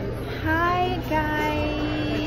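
A young woman singing in a high voice: a short rising phrase, then one long held note.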